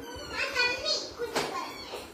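A young child's high-pitched voice calling out in short bursts, with a sharp click about one and a half seconds in.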